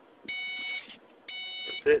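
In-car electronic beeper sounding two half-second, multi-pitched beeps about a second apart, part of a steady once-a-second series.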